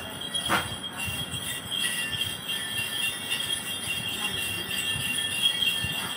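A cluster of small metal jingle bells, the chùm xóc nhạc of a Then ritual, shaken without pause in a steady jingle.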